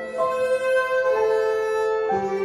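Electric violin playing a slow melody of long held notes over grand piano accompaniment.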